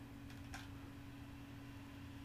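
Very quiet room tone with a faint steady electrical hum, and a single faint click about half a second in.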